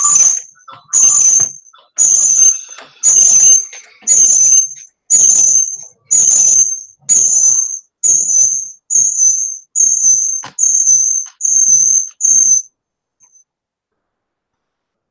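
Audio feedback echo loop in a video call: about a dozen repeating bursts, roughly one a second, each topped by a high whistle, dying out about 12.5 seconds in. It is the sign of a microphone picking up the call's own output, the echo later called horrible.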